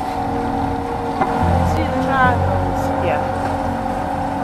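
A sailing yacht's inboard engine running as the boat motors out under power, its low rumble growing stronger about a second and a half in.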